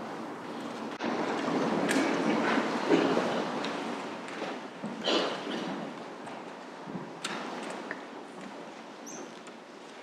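People shuffling and moving about, with footsteps and a few small knocks and clicks. The noise is louder in the first few seconds and then fades.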